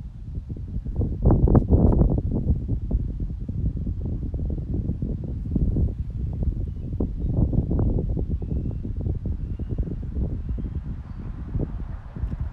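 Wind gusting across the microphone, a low rumbling buffet that swells strongest a second or two in and keeps rising and falling. A few faint, short bird chirps come through in the second half.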